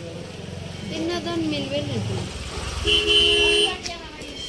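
A vehicle's engine running close by, then a vehicle horn honking once, a steady blare of about a second near the end.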